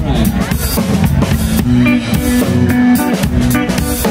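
Live rock band playing an instrumental passage on drum kit, electric guitar and bass guitar, with a steady beat of drum hits.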